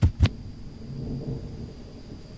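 End of an outro logo sting: two sharp hits a quarter second apart, then a low rumble like distant thunder that slowly dies away.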